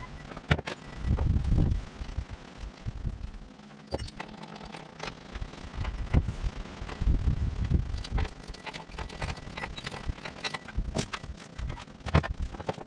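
Handling noises from putting a riding mower's rear wheel back on: scattered sharp clicks and knocks of metal and rubber parts, with a couple of stretches of low thuds.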